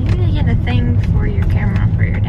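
Steady low rumble of a car moving, heard from inside the cabin, under women's voices talking.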